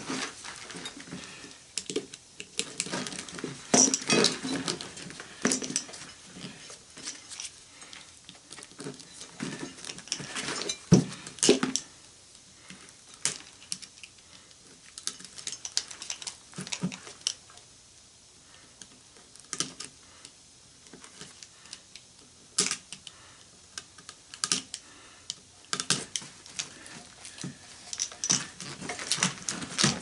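Irregular clicks, taps and scraping of hand tools (pliers and a hook-blade knife) working a small AC fan motor's copper-wound stator apart, cutting and pulling its lead wires. The handling is busiest in the first few seconds, with one louder knock about eleven seconds in and a quieter, sparser stretch after it.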